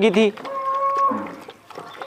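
A short animal call: one steady note held for about half a second, ending in a brief low falling sound.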